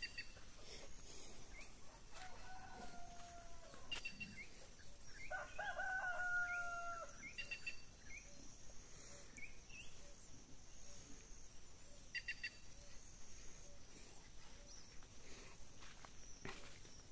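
A rooster crowing twice: a fainter crow about two seconds in, then a longer, louder one around five to seven seconds in.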